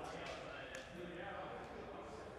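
Faint voices in the background, with a couple of soft knocks.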